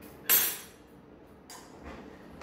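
A sharp clink of kitchenware that rings briefly as it fades, followed about a second later by a lighter tap.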